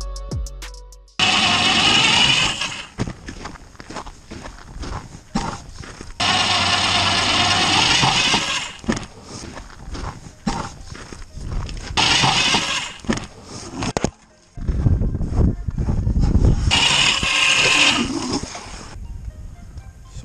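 Power ice auger drilling through the ice, running in several bursts of two to three seconds with quieter pauses between.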